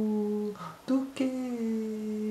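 A man humming a slow melody with no accompaniment: one held note ends about half a second in, then a longer held note begins about a second in and slides slightly down in pitch.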